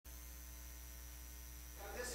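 Steady electrical mains hum from the chamber's microphone and sound system, with a faint steady high whine above it; a little room noise comes up near the end.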